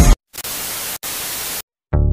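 A burst of even static hiss, like white noise, lasting a little over a second with a brief break in the middle; it follows a sudden cut in the music and stops abruptly before the music returns.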